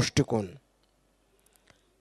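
A man's voice through a handheld microphone finishing a phrase, then a pause of about a second and a half with a few faint clicks.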